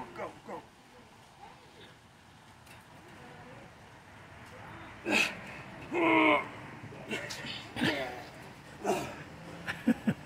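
Two men straining in an arm-wrestling bout: low for the first half, then a run of strained grunts and groans from about five seconds in. A short knock near the end as a hand goes down onto the metal tabletop.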